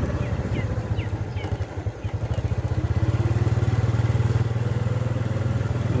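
Motorcycle engine running while riding along a dirt road. The engine sound dips about two seconds in and grows stronger again about a second later.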